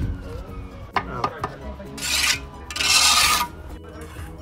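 Steel brick trowel scraped along the face of a course of bricks, cutting off excess mortar: a couple of sharp taps about a second in, then two long scrapes after the two-second mark.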